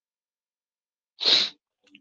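A single short, sharp breath noise from the man lecturing, a little over a second in.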